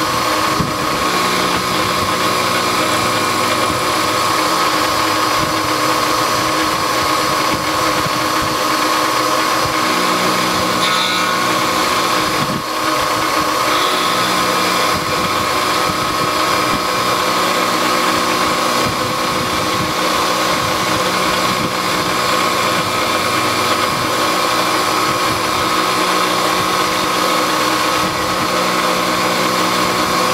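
Milling machine spindle running with an end mill cutting around the profile of a small model-engine connecting rod: a steady whine with cutting noise. A lower hum comes and goes several times.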